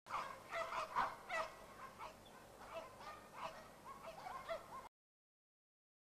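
Many short, overlapping bird calls, as from a flock. They are loudest and densest in the first second and a half, then thinner, and cut off suddenly near the end.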